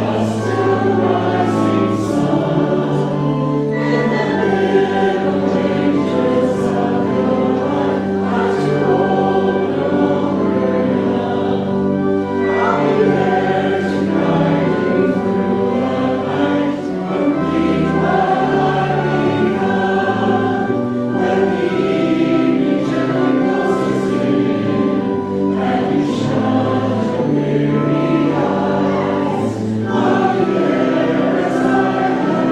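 Congregation singing a hymn together, with accompaniment holding long low notes beneath the voices.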